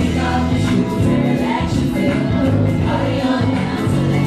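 Live R&B music through an outdoor stage PA: a woman singing into a handheld microphone over a backing track with a low bass line, running without a break.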